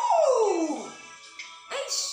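A woman's excited vocal exclamation, a long 'ooh' that swoops up and then slides down in pitch over about a second, with music playing underneath. A shorter vocal burst follows near the end.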